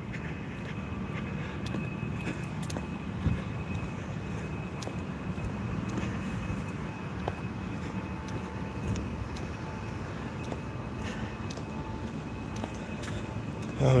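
Steady outdoor street ambience: a low, even hum of road traffic, with a faint steady high tone running through it.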